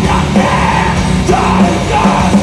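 Metal band playing live at full volume, with a shouted vocal line over the band.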